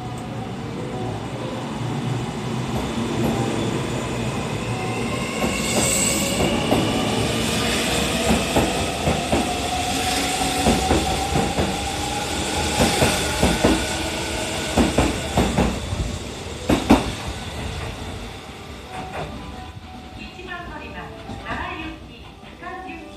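Kintetsu 80000 series Hinotori limited express pulling out past the platform. Its traction-motor whine rises slowly in pitch as it gathers speed, and its wheels click over the rail joints, loudest about 17 seconds in, then fade.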